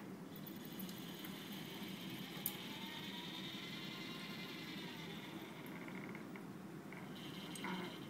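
SCORBOT-ER4u robot arm's joint motors whining faintly as the arm swings across and lowers its gripper, a high steady whine lasting about five seconds with one small click partway through. A second, shorter whine comes near the end as the gripper reaches the cube.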